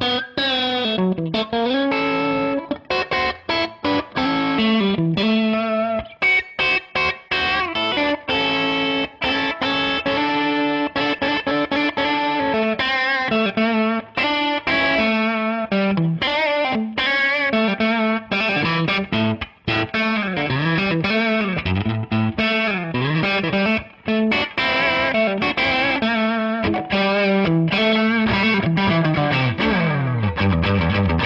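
Electric guitar lead solo, a Stratocaster played through a Fender Hot Rod Deluxe tube combo amp with overdrive. It runs as a steady stream of single notes, many bent up and down and held with vibrato.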